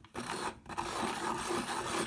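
Hand-cranked rotary pencil sharpener, a child's zebra-shaped desk model, grinding as its handle is turned and its cutter shaves a wooden pencil. It is a noisy, steady rasping with a brief break about half a second in.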